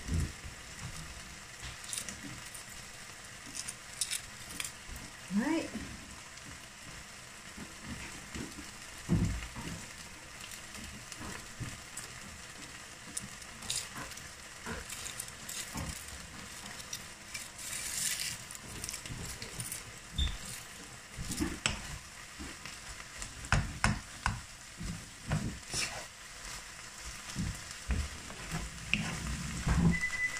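Minced beef and red onions frying in a large pan: a steady sizzle, broken by scattered sharp clicks and pops and an occasional knock.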